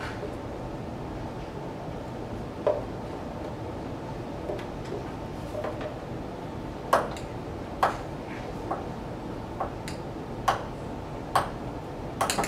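A handful of sharp taps and knocks from a utensil striking the blender jar as salsa is scraped and poured out into a bowl, most of them in the second half, over a steady room hum.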